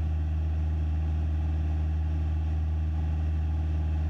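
Cessna 172SP's four-cylinder Lycoming IO-360 engine and propeller droning steadily in cruise, heard inside the cabin as an even, low hum.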